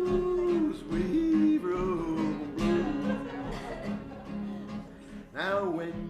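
A man singing with acoustic guitar: a held note breaks into a short wavering, yodel-like phrase, then the guitar plays on alone more quietly before the voice comes back with a rising and falling phrase near the end.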